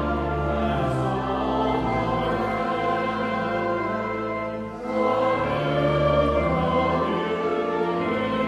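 A hymn sung by a church congregation with organ accompaniment, held notes over steady low bass tones. There is a brief break between lines a little before five seconds in, and the next line comes in louder.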